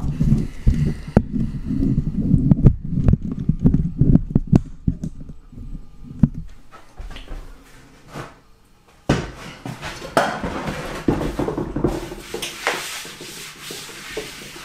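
Knocks and thumps of a large wooden cable spool being handled and tipped over onto its top. About nine seconds in comes a sudden knock, then a few seconds of scraping noise on the wood.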